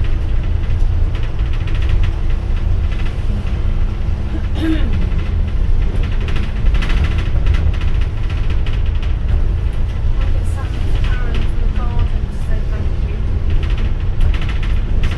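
Double-decker bus on the move, heard from its upper deck: a steady low engine and road rumble, with a steady hum that stops about four and a half seconds in.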